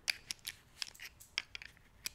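Knockoff Cobra-style metal belt buckle being worked by hand: a series of light, irregularly spaced clicks and taps.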